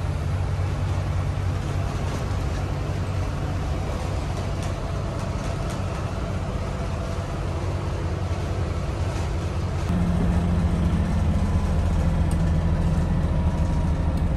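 Cummins 5.9 24-valve diesel engine of a 2000 Blue Bird school bus running steadily under way, heard inside the cabin with road noise. About ten seconds in, the engine note steps up higher and gets louder.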